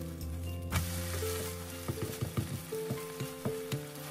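An egg and cabbage pancake is flipped in a hot nonstick frying pan: sizzling starts suddenly about a second in, then a slotted spatula knocks and presses against the pan several times.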